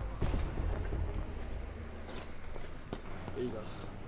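Steady low outdoor rumble with a few faint clicks, and a faint voice about three and a half seconds in.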